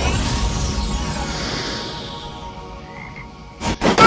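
A sparkling shimmer and the tail of the logo music fade away over about three seconds, then near the end a sudden loud burst leads into a croaking cartoon voice.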